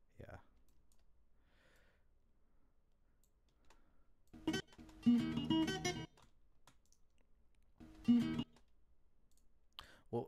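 Short snippets of a recorded acoustic fingerstyle guitar played back and stopped: a phrase starting about four and a half seconds in that cuts off abruptly after about a second and a half, and a second, shorter burst near the end, with a few clicks between.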